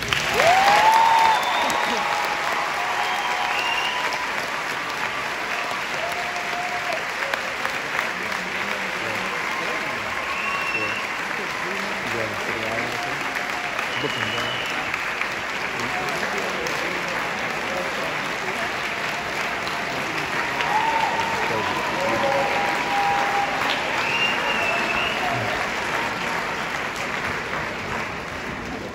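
Large audience applauding steadily, with voices calling out and cheering over the clapping; the applause begins abruptly and fades near the end.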